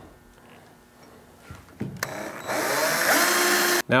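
Cordless drill boring a hole through a pickup truck's fender. It is quiet at first; the drill starts about halfway through, runs at speed with a whining motor for under two seconds, and stops just before the end.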